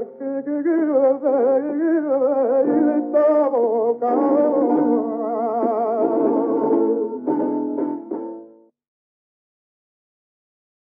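1952 recording of a male flamenco cantaor singing an ornamented, wavering line to Spanish guitar. The guitar chords come in about three seconds in, and the piece dies away and stops a little past eight seconds, leaving silence.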